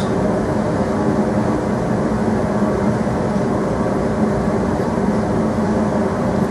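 A steady drone: an even rushing noise over a low hum, unchanging and as loud as the speech around it.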